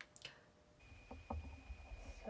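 Quiet handling of a plastic squeeze bottle of acrylic paint as navy blue paint is squeezed into a plastic palette well, with small clicks at the start and about a second in.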